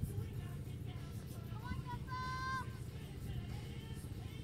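Wind rumbling on the microphone, with a short, high, held call from a person's voice about two seconds in.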